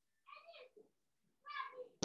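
Two faint, short voice-like calls, each about half a second long, the second near the end.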